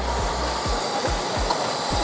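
DeWalt DCE600 cordless knockout tool running with a steady whir as it draws the knockout punch through a steel enclosure wall.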